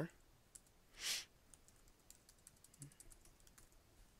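Faint typing on a computer keyboard: a scatter of light key clicks, thickest in the second half, with a brief hiss about a second in.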